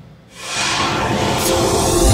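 Logo-sting sound effect: a rising whoosh that swells in about half a second in and builds steadily toward the logo reveal.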